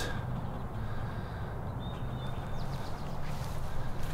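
Outdoor ambience with a steady low rumble, and faint short bird calls about two seconds in and again a little past three seconds.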